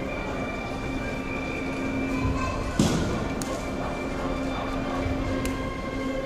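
Background instrumental music with long held notes plays in a large hall. About three seconds in comes one sharp thud, made by the martial artist performing a form on the mat, with a couple of fainter taps later.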